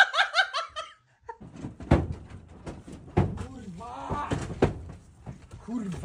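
High-pitched laughter that stops about a second in. After a short silent gap come a few sharp knocks and thuds, with a brief voice among them.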